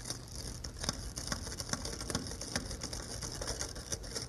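Hand screwdriver driving a screw through a brass strike plate into a wooden door jamb: a steady rasp of the screw turning, with irregular clicks of the tip and the driver's grip.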